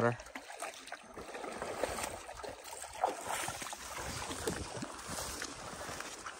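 Shallow pond water splashing and sloshing as a man wades to fill a bucket and a dog moves through the water nearby, an irregular run of small splashes.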